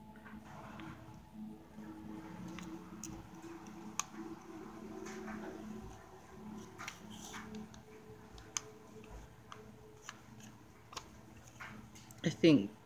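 Faint handling sounds of bead embroidery: scattered small clicks and ticks of Czech glass seed beads and a fine needle being worked through felt, over a low steady hum.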